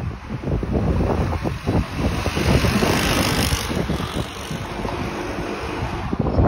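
Wind buffeting the microphone over street traffic, with a passing vehicle growing loudest around the middle.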